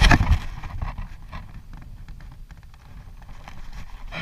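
Wind rumbling on an action camera's microphone outdoors, with a loud gust-like burst at the start, then light knocks, rustles and clicks of handling as a caught bass is lifted and held.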